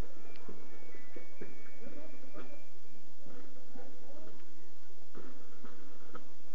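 Faint band music from a youth band on the field, with a few held high notes, under scattered distant voices and a steady low hum.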